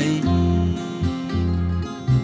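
Instrumental backing of a slow ballad, guitar with sustained bass notes and chords, playing on between sung lines with no voice.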